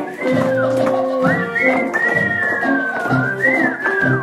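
Live band music for a stage musical number: held middle notes over a bass line, with a high melody that swoops upward and then slides slowly down in pitch.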